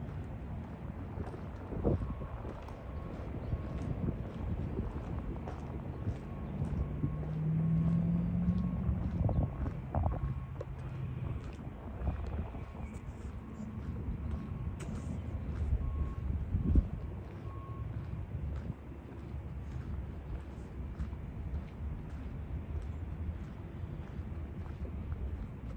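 Outdoor rumble of distant traffic with wind buffeting the microphone, and a vehicle's engine hum that swells and fades about a third of the way through. Light regular footsteps on a concrete path tick along underneath.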